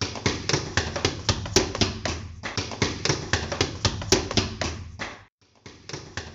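Rapid, irregular sharp taps, roughly four or five a second, over a low steady hum. They stop briefly about five seconds in, then start again.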